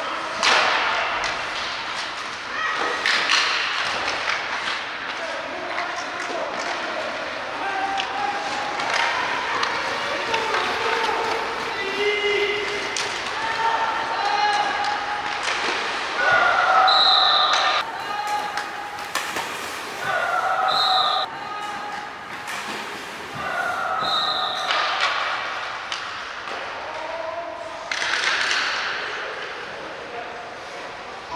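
Live sound of an ice hockey game in an indoor rink. Repeated sharp clacks and thuds come from sticks, puck and boards, mixed with players' voices calling out in short shouts.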